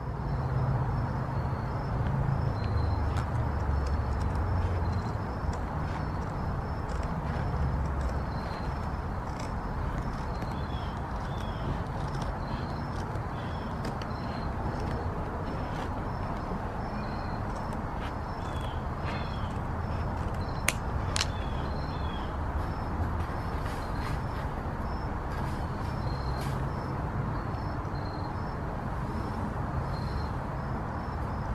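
Outdoor background noise: a steady low rumble of distant traffic, stronger in the first third, with faint, repeated small bird chirps over it.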